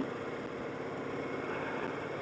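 Motorcycle engine running steadily at low road speed, with a steady rush of wind and road noise.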